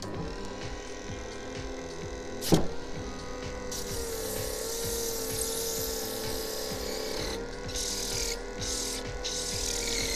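Bench disc sander running with a steady motor hum; a block of hardened silicone is pressed against the spinning sanding disc, giving a hissing rub from about four seconds in that turns into short on-and-off scrapes near the end as it lifts the clogged dust off the paper. A single sharp knock comes about two and a half seconds in, and background music plays throughout.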